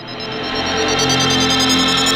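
Electronic synthesizer music: sustained tones with a high line slowly rising in pitch, building in loudness.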